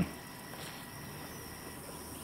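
Quiet outdoor background with a faint, steady high-pitched drone of insects.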